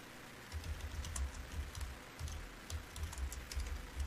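Typing on a computer keyboard: irregular keystroke clicks, some with a dull low knock.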